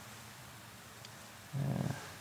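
Faint room hiss, then near the end a short, low murmur from a man's voice.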